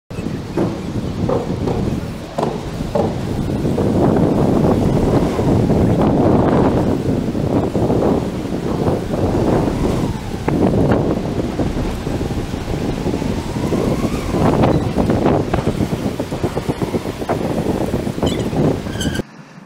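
Heavy wind noise buffeting the microphone of a moving action camera, a loud, uneven low rumble, with scattered short knocks and rattles.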